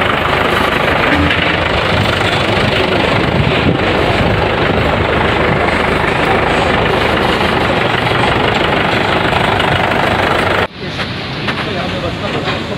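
Engine of a ration delivery truck running steadily at idle, with voices mixed in. About a second before the end the steady engine noise cuts off and gives way to a more uneven noise.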